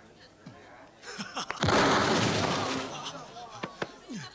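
A sudden loud burst of noise about one and a half seconds in that fades away over the next second and a half, as a smoke bomb goes off and fills the room with smoke.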